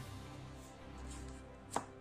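Faint handling of comic books on a wooden table, with one sharp tap near the end as a comic is put down.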